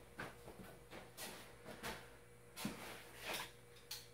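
Faint footsteps and a scattered run of small knocks and clicks, a few to the second, as a person walks up to a parked motorcycle, over a faint steady hum.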